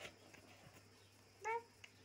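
A baby makes one short, high-pitched vocal sound about a second and a half in.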